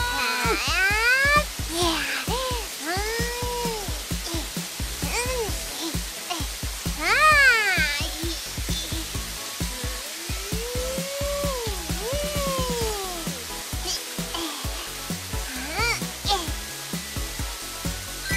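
Children's background music with a steady beat, under a hissing water-spray sound effect. Over it come repeated tones that slide up and then down, loudest near the middle.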